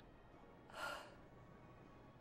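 A single short, breathy gasp from a person, about a second in, against near-silent room tone.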